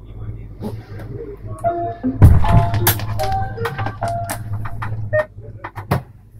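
Short electronic chime tones in a Stadler KISS train cab over a steady low hum, with a heavy thump a little over two seconds in.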